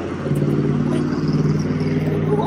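Steady low hum of a running engine.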